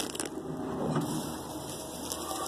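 Snack packaging being handled: soft rustling and crinkling with a few small clicks.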